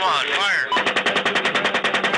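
AH-64 Apache helicopter's 30 mm chain gun firing one long burst of about ten shots a second, heard over the aircraft's radio recording. A brief radio voice comes just before it.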